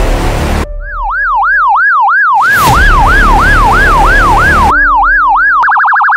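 Police siren sound effect, a clean tone wailing up and down about three times a second, then switching near the end to a much faster yelp. A loud rushing noise plays at the start and again under the siren for about two seconds in the middle.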